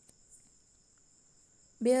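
A pause in speech with a faint, steady high-pitched whine or chirring in the background. A woman's speaking voice starts again near the end.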